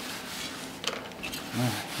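Paper towel rubbing across a wooden workbench, wiping up spilled soapy, muddy water, with a light click or two about a second in.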